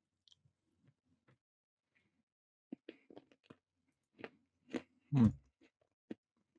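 A person chewing crunchy food close to the microphone: a run of short, sharp crunches from about three seconds in, and a louder, low sound just after five seconds.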